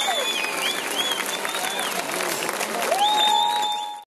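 Concert crowd applauding and cheering, with long high-pitched calls rising and falling over dense clapping. The sound fades out at the very end.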